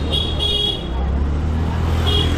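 Busy street traffic: the low, steady engine rumble of motor scooters and other vehicles passing close by. A short high-pitched beep sounds twice, once near the start and again at the end.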